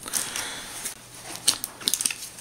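Handling noise from plastic compact discs being set down and picked up: a soft rustle, then a few sharp clicks about a second and a half in and just before the end.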